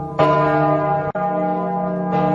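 A bell struck once just after the start and left ringing, its many tones fading slowly. The sound cuts out for an instant a little past a second in, then the ringing carries on.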